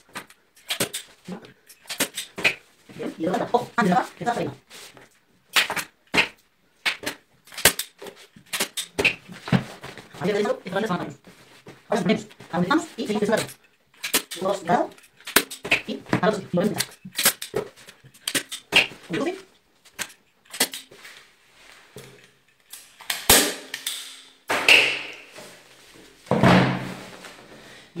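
An automatic upholstery staple gun driving staples through fabric into a chair seat board: a run of sharp clicks and snaps, the loudest near the end. A person's voice talks over much of it.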